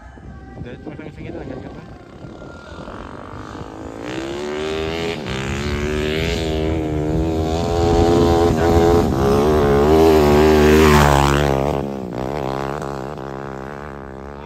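Dirt bike engine riding in close over gravel. It grows louder over several seconds, with the note rising and falling with the throttle, then drops in pitch and fades as the bike passes.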